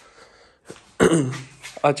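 A man clears his throat once, briefly, about a second in, then starts speaking near the end.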